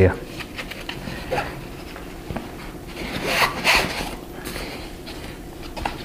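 The nylon front pocket of a 5.11 Rush 72 backpack being handled by hand: fabric rubbing and rustling with a rasp, loudest for about a second around three to four seconds in, and a few faint small clicks before it.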